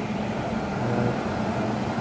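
Steady hum and hiss of an Indian Railways WAP-7 electric locomotive standing at the platform, with a voice faintly in the background about a second in.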